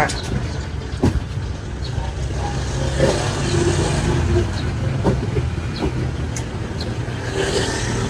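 A motor vehicle's engine running with a steady low rumble, with a few sharp knocks from cardboard parcels being handled and set down.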